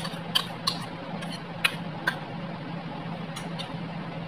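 Light clicks and taps of a small bowl knocking against the rim of another bowl as chopped onion is tipped out of it: several irregular taps in the first two seconds, the sharpest about one and a half seconds in, then two more near the end.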